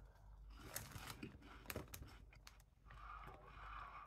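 Faint crunching of a baked corn puff snack being chewed, a few soft, short crunches spread over the moment.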